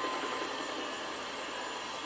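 A film trailer's soundtrack playing through desktop computer speakers: a steady, even rumble of ambient noise with no speech.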